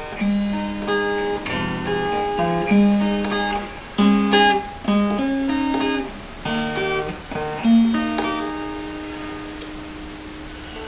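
Acoustic guitar played alone: chords picked and strummed in a soft pattern, notes ringing over one another, then the last chord is left to ring and fade from about eight seconds in.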